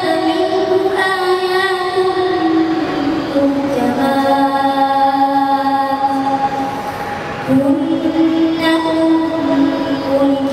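A boy's voice reciting the Quran in a slow melodic chant through a microphone, drawing out long held notes. The pitch steps down a few seconds in and holds low, then after a short breath about seven and a half seconds in a new phrase starts on a higher note.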